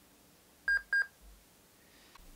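Dell Latitude E4300 laptop's built-in speaker giving two short, high beeps about a third of a second apart, as the BIOS finds no boot sector on the newly fitted blank SSD.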